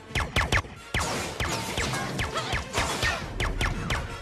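Film fight soundtrack: sharp clashes of an electrified riot baton against a chrome spear, a quick run of them in the first half-second and another at about a second. Falling electronic zaps follow, over music.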